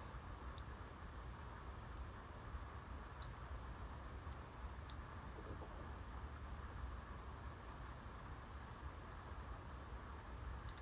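Quiet room tone with a few faint, small clicks, about three and five seconds in.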